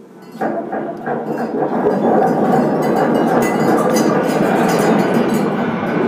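Free-improvised electroacoustic music: a dense, noisy drone swells in about half a second in and holds loud, with scattered metallic clinks above it.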